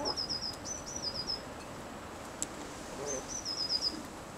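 A small songbird singing a short, high, quick phrase of falling notes, three times over, twice in quick succession at the start and once more near the end.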